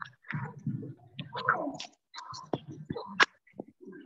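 Low, indistinct speech and whispering, broken up, with two sharp clicks in the second half.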